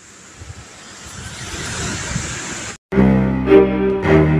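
Wind rushing and building steadily louder for nearly three seconds, then cut off suddenly. Outro music led by low bowed strings, cello-like, starts just after the cut.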